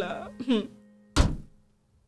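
A woman's voice trails off over a sustained backing-music chord. About a second in comes a single dull thump, and then the sound cuts to dead silence.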